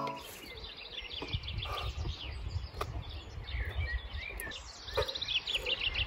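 Small songbirds chirping in quick runs of high notes, with a low rumbling noise underneath and a few sharp clicks.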